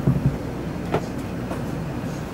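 Steady low rumble of a bowling alley's background noise, with a light click about a second in.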